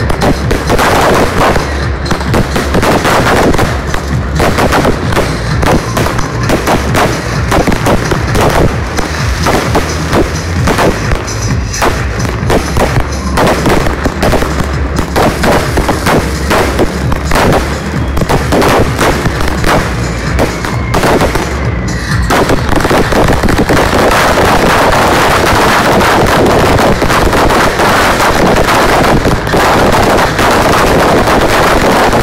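Fireworks going off in a rapid, dense string of sharp bangs and crackles. About two-thirds of the way through, the bangs thin out into a steady, loud rushing hiss of ground fountains spraying sparks.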